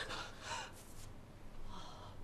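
A person's faint breathy gasps: two short breaths about a second apart.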